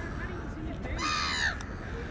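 A single harsh bird call, about half a second long, about a second in, over faint background voices.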